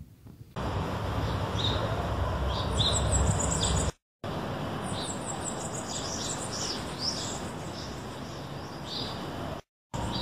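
Small birds chirping: many short, high chirps over a steady low outdoor rumble. The sound cuts out abruptly twice, about four seconds in and near the end.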